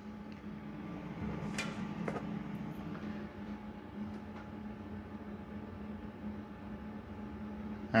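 A steady low machine hum, with a couple of faint light clicks about one and a half and two seconds in.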